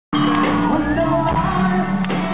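Live rock band playing in a large hall, with a male lead singer's amplified voice over it. The sound cuts in abruptly right at the start.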